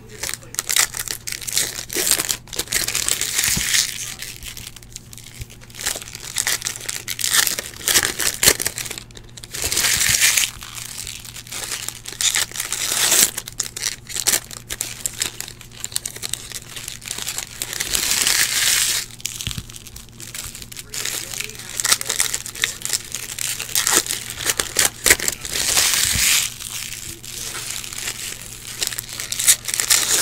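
Foil wrappers of baseball card packs being torn open and crinkled by hand, in repeated bursts of rustling a few seconds long, with small clicks of cards being handled between them.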